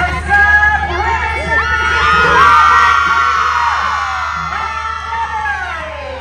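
A group of young women cheering and shouting together, many high voices overlapping in a long group shout that swells about two seconds in and trails off near the end.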